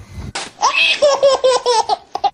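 A baby laughing hard at paper being torn in front of it, in a quick run of high-pitched repeated bursts. A short noisy burst comes just before the laughter.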